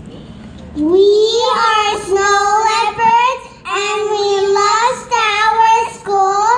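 A young girl singing solo into a microphone, starting about a second in with long held notes in short phrases and brief breaths between them.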